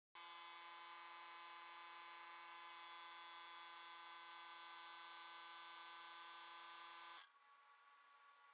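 A faint, steady buzzing drone made of many held tones, which drops to a quieter hum about seven seconds in.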